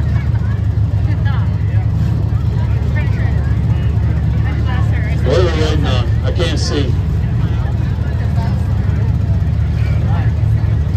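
Demolition derby cars' engines running together in a steady, loud low rumble. Crowd voices carry over it, with a louder shout about five to seven seconds in.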